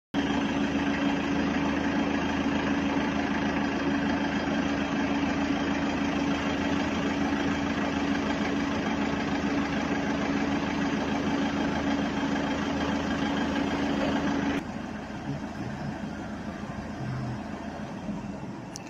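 A steady mechanical hum with a strong low tone and overtones over a broad noise. About three-quarters of the way through it drops suddenly to a quieter background.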